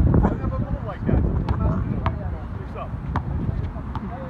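Wind buffeting the microphone, with players' voices calling out and a basketball bouncing a few times on the hard court surface.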